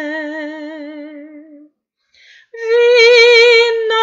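A woman singing a Romanian Christian song solo, without accompaniment. She holds a long note with vibrato that fades out about a second and a half in, then takes a breath and comes in on a higher, louder held note.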